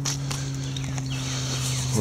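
An engine running at a steady low hum, its pitch unchanging, with scattered light clicks and rattles on top.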